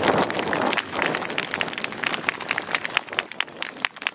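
Audience applause with crowd voices, thinning out to scattered individual handclaps and fading.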